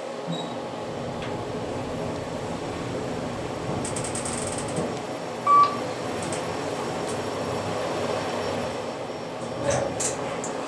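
Kone EcoDisc traction elevator running between floors, a steady rumble of the car moving in its shaft. About five and a half seconds in there is one short, loud electronic beep.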